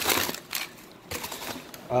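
Brown kraft packing paper crinkling as a hand pushes it aside in a cardboard box, in a few short rustling bursts, the first the loudest.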